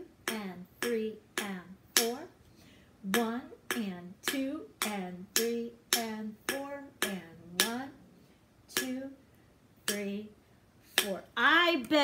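A woman chanting rhythm counts in a steady beat, each count marked by a sharp percussive tap. The counting thins out into a short lull near two-thirds of the way through, then ordinary talking picks up at the end.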